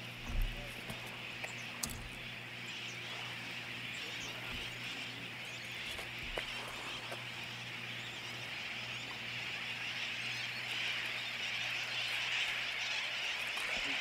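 A steady din of many birds calling at once, a high chatter that grows louder toward the end. Under it runs a low steady hum, with a few soft bumps in the first two seconds, the strongest about half a second in.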